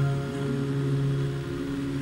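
Live symphonic metal band music: a low chord held steady with no singing over it.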